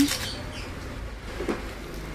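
Pot of vegetable soup boiling on the stove, a steady soft bubbling hiss, with a single light knock about one and a half seconds in.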